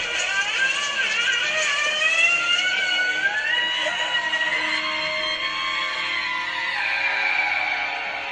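Music from the episode's soundtrack, with high sustained tones gliding slowly up and down.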